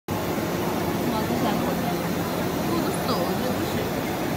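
Steady background noise with faint, indistinct voices talking in the distance.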